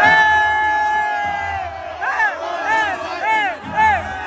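A voice holds one long shouted note, then gives four short rising-and-falling calls about half a second apart, over crowd noise.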